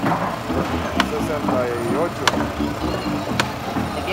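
Busy cigar factory floor: many workers' voices chattering with music underneath, and three sharp clicks spaced about a second apart.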